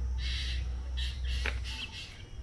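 Several short bird calls over a steady low hum, with one brief click about one and a half seconds in.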